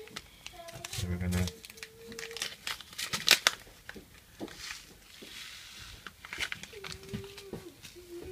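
Paper seed packet being handled and opened: dry crinkling and tearing crackles, the loudest about three seconds in.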